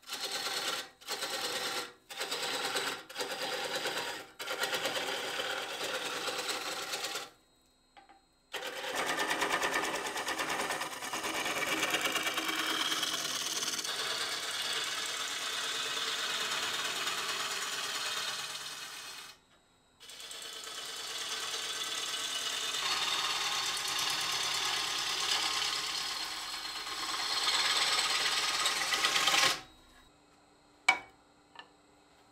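A machine running with a fast, repetitive mechanical chatter, cut into pieces: several short bursts of about a second each at first, then longer stretches broken by two brief silences.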